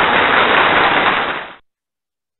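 A loud, steady rush of crackly noise with no pitch to it, which cuts off abruptly about one and a half seconds in.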